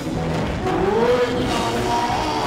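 A church congregation singing a gospel song, voices sliding up and down on held notes, with hand clapping.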